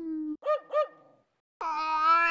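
Cartoon dog answering with a falling yelp and then two quick barks, followed near the end by the start of a long cat meow.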